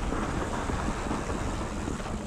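Wind rushing over an action camera's microphone, with tyres rolling on a dry dirt trail, as a mountain bike descends at speed. The noise is steady throughout.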